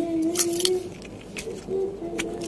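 A low, steady hum-like tone, heard in the first second and again near the end, with a few light clicks of the small plastic key-remote parts and coin battery being handled.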